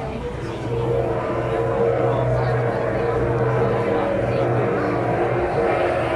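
Street crowd noise, joined about a second in by a loud, steady droning tone that shifts pitch near the end.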